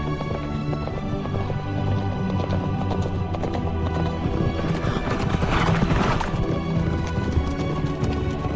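Hoofbeats of a horse on a dirt road under a film score of steady music, with a brief louder burst of sound about five to six seconds in.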